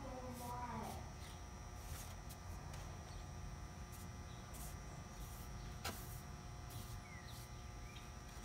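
Paintbrush bristles swishing across a wooden door frame in short, repeated strokes, over a steady low background noise. A single sharp click comes about six seconds in.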